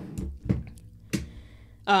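Three sharp clicks and knocks from a .40-calibre Ruger P94 pistol being handled with its slide held back. The loudest comes about half a second in, with a dull thud.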